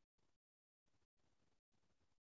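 Near silence: a very faint hiss that keeps cutting in and out, with a short dead-silent gap about half a second in.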